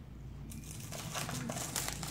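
Plastic wrapping on a fireworks cake box crinkling as it is handled, starting about half a second in and growing louder.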